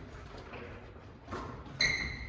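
Basketball play on a hardwood gym floor: a thud about two-thirds of the way in, then a short, high-pitched sneaker squeak near the end, echoing in the large hall.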